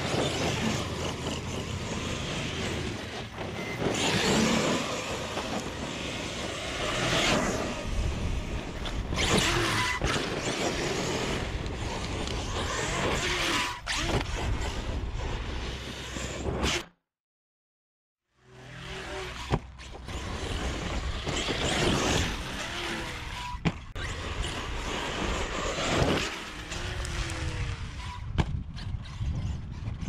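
Arrma Kraton 8S RC monster truck on 8S power with a Hobbywing 5687 1100 kV brushless motor, running hard over loose dirt in repeated bursts of acceleration that come every few seconds. The sound drops out completely for about a second midway.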